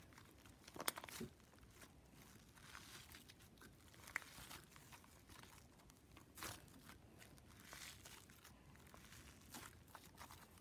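Faint, irregular squishing and crackling of fluffy slime, made with shaving cream and holding small foam balls, being kneaded and stretched by hand, with a slightly louder pop or two about a second in.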